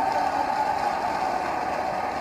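Steady background drone of an open-air venue heard through the stage microphones in a pause between spoken sentences, with no speech in it.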